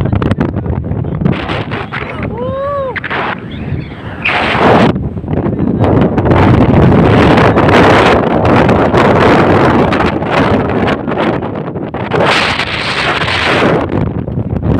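Strong wind buffeting the phone's microphone: a loud, uneven rumbling roar that builds about four seconds in and stays heavy for most of the rest. A short rising-and-falling tone sounds briefly near the start.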